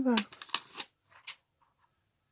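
A woman's voice finishing a short phrase, followed by a quick cluster of sharp clicks and rustles from handling, with the loudest click about half a second in and two faint ticks a little later.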